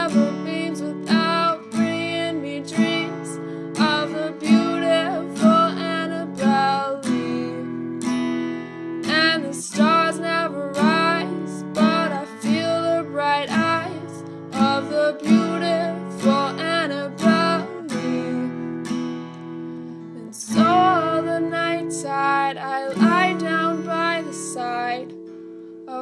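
Acoustic guitar playing an instrumental passage of a song without singing, plucked and strummed notes in a steady rhythm over ringing low notes.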